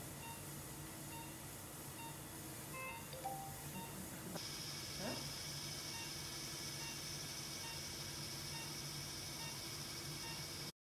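Operating-room background: a patient monitor beeping regularly about once a second over a steady equipment hum. Partway through the sound changes abruptly to a steady high hiss.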